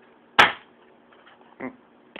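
Pump-up pneumatic air pistol fired once, charged with a single pump, into a cardboard cereal box at close range: one sharp crack less than half a second in, then a much softer knock about a second later.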